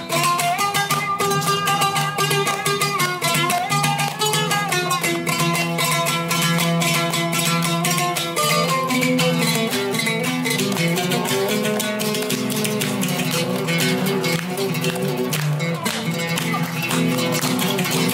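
Oud played solo in a run of fast, rapidly repeated plucked notes, the melody moving up and down.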